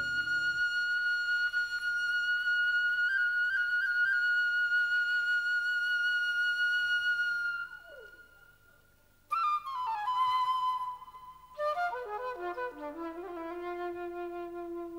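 Solo flute holding one long high note with small ornaments, which fades out about eight seconds in. After a short pause it comes back with a note that slides downward, then plays a falling phrase of shorter notes.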